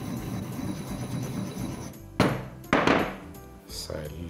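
Two loud stone knocks from a granite mortar and pestle, about half a second apart a little over two seconds in, over background music.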